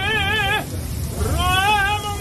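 Operatic tenor singing with a wide, even vibrato: a held note breaks off about half a second in, and after a short breath a new note swoops upward and is held.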